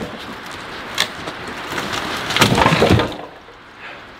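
Leaking waterfall fixture being wrenched out of a turtle tub: rough scraping and cracking with some water noise, a sharp knock about a second in and the loudest crunching burst about two and a half seconds in, then it falls quieter.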